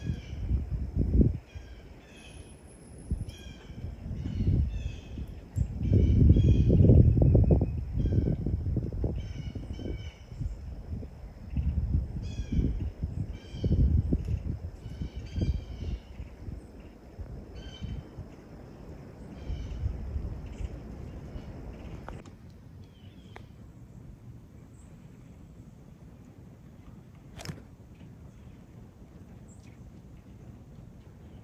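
Birds calling in runs of short, harsh caws through the first half, thinning out after about sixteen seconds. Under them come uneven bursts of low rumble, loudest a few seconds in. A single sharp click comes near the end.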